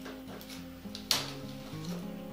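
Soft instrumental background music with steady held notes. About a second in, a single sharp click.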